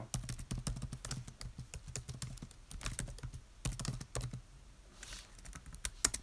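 Fingers typing and tapping on computer keys close to the microphone: a run of irregular light clicks, some in quick clusters.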